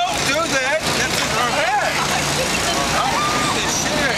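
Busy city street sound: several indistinct voices talking over a steady wash of traffic noise.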